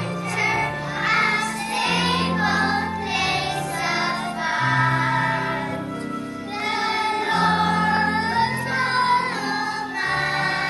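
A group of young children singing a song together, with instrumental accompaniment holding long low notes that change every second or two.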